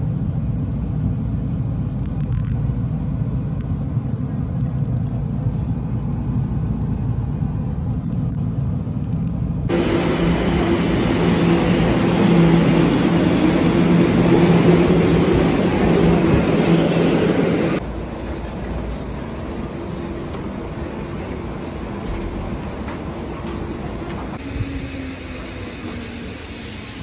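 Subway train noise: a steady low rumble inside a moving car, then a louder train beside a platform with a steady hum from its motors. The sound cuts abruptly to quieter station noise a little past the middle.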